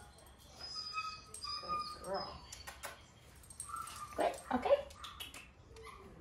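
A dog whining in several short, high-pitched whimpers.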